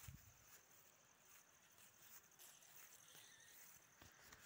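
Near silence: faint outdoor background, with a soft low thump at the very start.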